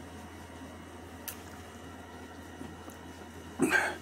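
A man quietly swallowing hot sauce drunk straight from a small bottle, over a low steady hum, with a faint click about a second in. Near the end comes one short, loud, breathy sound from his throat.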